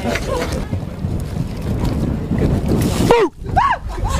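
Wind rumbling on the microphone over outdoor background noise, then two short rising-and-falling cries near the end.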